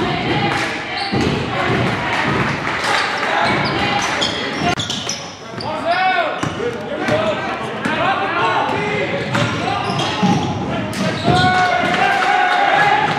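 Live game sound in a school gym: a basketball bouncing on the hardwood court in repeated sharp thuds, sneakers squeaking in short bursts, and unclear shouting from players and spectators, all echoing in the hall.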